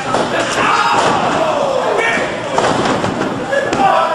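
Wrestling ring action: bodies slamming and thudding onto the ring canvas, with voices yelling over the impacts and one drawn-out yell falling in pitch about a second in.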